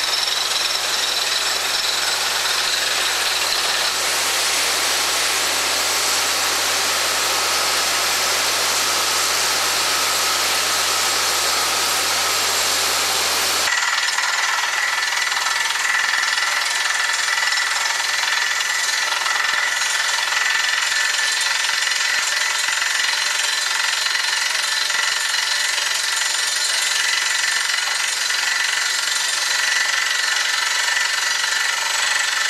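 Truck-mounted well-drilling rig drilling a geothermal borehole: steady loud machine noise of the running rig and air drilling, with cuttings and spray blowing out at the wellhead. The sound changes abruptly about halfway through, losing its low hum and turning brighter.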